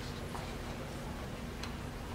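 Quiet hall ambience with a steady low hum and a few faint, scattered clicks.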